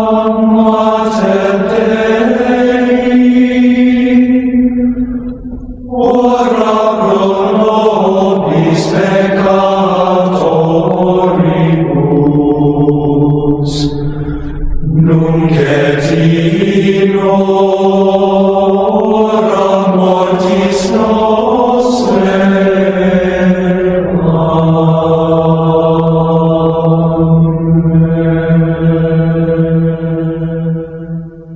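Gregorian chant sung by a choir in slow, sustained phrases, with short breaks between phrases about five and fifteen seconds in.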